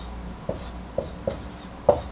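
Dry-erase marker writing on a whiteboard: four short strokes as letters are drawn, the loudest near the end.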